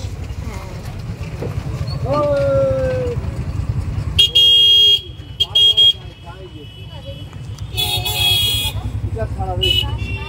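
Vehicle horns honking in road traffic: a blast of nearly a second about four seconds in, a short one soon after, a longer one around eight seconds and a brief toot near the end, over the steady low rumble of the moving passenger vehicle.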